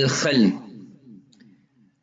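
A man's lecturing voice ends a phrase and trails off in the first half second, then a single faint click about a second later, then a pause.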